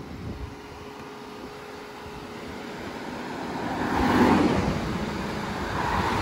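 A car passing on the highway: its road noise swells to a peak about four seconds in, then slowly fades.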